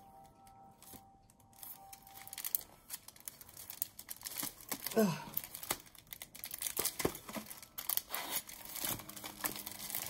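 Plastic and card brush packaging crinkling and tearing as it is pulled open by hand, a run of small crackles that starts about two seconds in.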